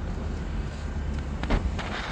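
Wind rumbling on the phone microphone, with a single short thump about one and a half seconds in.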